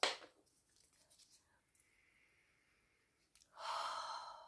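Near silence, then about three and a half seconds in a woman's breathy sigh of delight lasting about a second, let out after smelling a perfume.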